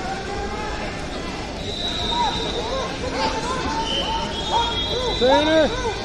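Busy sports-hall ambience: people talking across the hall, with repeated short squeaks of wrestling shoes on the mats, loudest about five seconds in.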